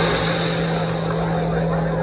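A car engine running steadily, a low even hum under a wash of noise.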